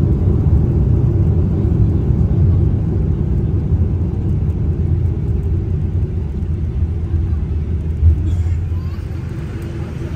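Low rumble of an airliner heard from inside the cabin as it rolls along the runway after landing, easing gradually as it slows. A single thump comes about eight seconds in, and the rumble drops to a quieter level just after.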